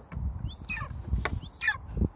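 Golden eagle giving two high, falling calls, about half a second and a second and a half in.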